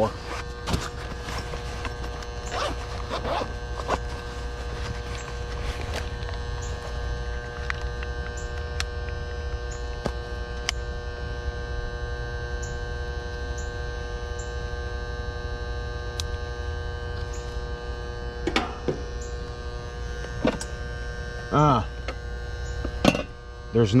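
Air-conditioning condenser's contactor humming steadily, its coil energised while the compressor and fan stay off: the unit gets no line power because the disconnect has no fuses in it.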